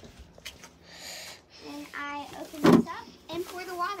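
Brief snatches of indistinct speech.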